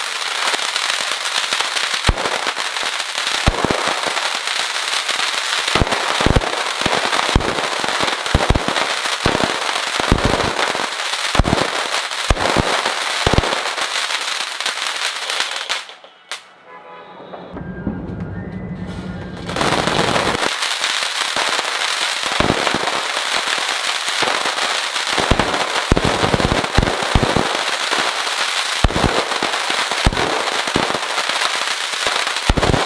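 Anar fountain firework spraying sparks: a steady loud hiss with a dense run of sharp crackling pops. About halfway through it dies away, and after a short lull a second fountain takes over with the same hiss and crackle.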